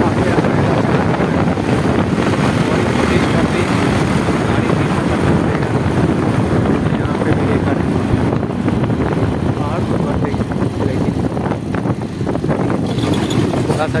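Bajaj Pulsar 220 single-cylinder motorcycle running at road speed, with wind rushing over the handlebar-mounted phone's microphone. The engine and wind ease off a little near the end as the bike slows for a curve.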